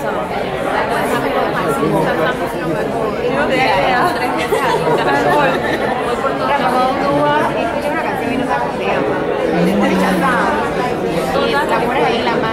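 Many people talking at once in a large room: overlapping, unintelligible conversations of a group working in small discussions.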